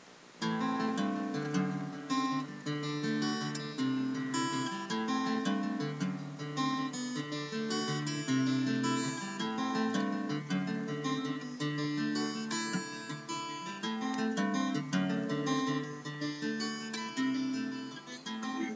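Solo acoustic guitar playing the instrumental opening of a song, picked and strummed chords starting about half a second in and continuing steadily.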